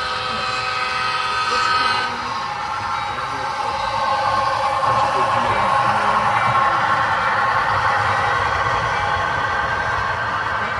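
A model diesel locomotive's horn sounds a steady chord that cuts off about two seconds in. It is followed by the steady sound of the locomotive running and its hopper cars rolling over the crossing.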